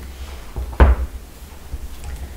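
A single dull thump about a second in as a book is set down on the table close to the microphone, over a low rumble of handling noise.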